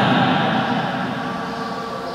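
A man's lecturing voice trails off in the first half second into a pause filled with steady background hiss.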